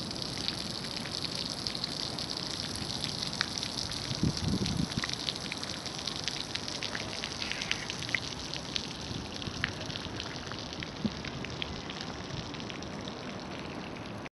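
Small garden fountain jet splashing steadily: a continuous patter of falling water.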